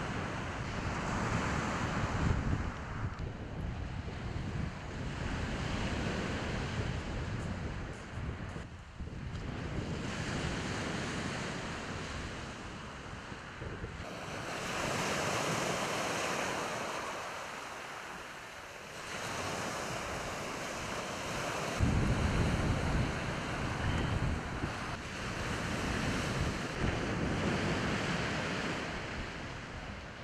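Surf breaking and washing up a shingle beach, swelling and fading every four or five seconds, with wind buffeting the microphone.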